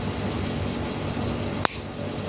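Small cutting pliers snipping the tip off a steel syringe needle: one sharp snip near the end, over a steady hiss.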